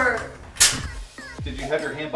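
A framing nail gun fires once about half a second in, a single sharp shot driving a nail into a wooden stud, over background music with a steady beat.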